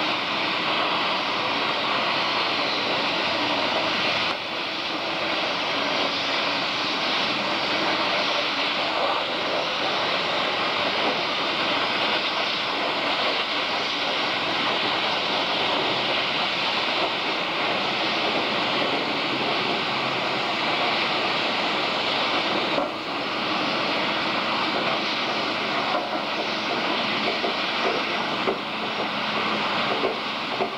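A steady, loud rushing hiss that runs unbroken except for brief dips about four seconds in and again past twenty seconds.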